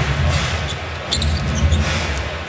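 Live basketball game sound in an arena: crowd noise under a deep bass line from the arena music, with a ball being dribbled and a few sneaker squeaks on the hardwood about halfway through.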